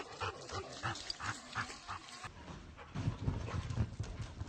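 A dog panting in quick, faint, rhythmic breaths, about four a second. About two seconds in this gives way to low, muffled thumps of a dog bounding around on a sofa.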